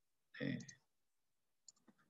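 A few faint computer mouse clicks, two of them near the end, as settings are clicked in the debugger software, with a short spoken syllable about half a second in.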